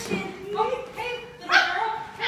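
A woman's voice making short wordless vocal sounds whose pitch slides up and down, with a sudden louder one about one and a half seconds in.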